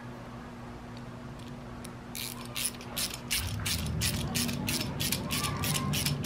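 A 7/16 socket ratchet wrench clicking quickly, about five clicks a second, as it tightens a nut and bolt on the grappling hook's steel linkage. The clicking starts about two seconds in.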